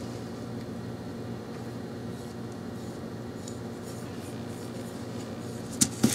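Faint brushing of a foam brush laying watered-down red acrylic paint along a wooden quarter-round strip, over a steady low hum. A short click near the end.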